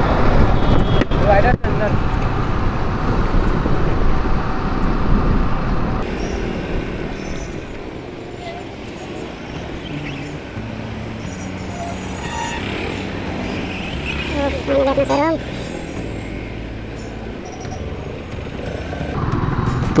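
Motorcycle riding through city traffic: loud wind and engine noise while it is moving, dropping suddenly about six seconds in to a quieter stretch with the engine running low amid surrounding traffic, then rising again near the end. A short voice is heard about fifteen seconds in.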